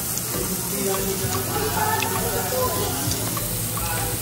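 Strips of pork belly sizzling steadily on a Korean barbecue grill plate.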